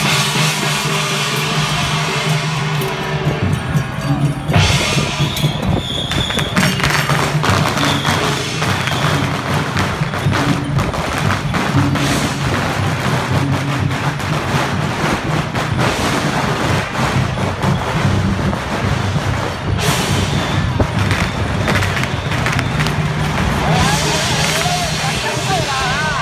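Loud accompaniment to a Ba Jia Jiang temple procession troupe: music with dense, rapid percussion strikes over a steady low drone, mixed with voices.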